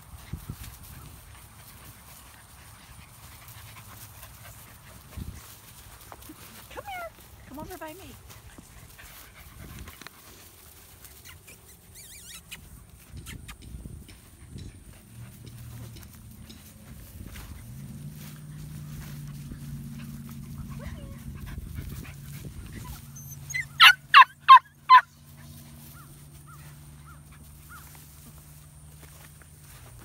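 A puppy yapping five quick, high barks in a row, about two-thirds of the way in. A faint, steady low hum runs under the second half.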